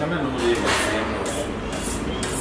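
Faint background voices and steady shop room noise, with a brief rustling hiss about two-thirds of a second in.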